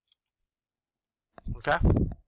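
Near silence with a single faint click just after the start, from working the computer while editing code, then a man's voice saying "okay" near the end.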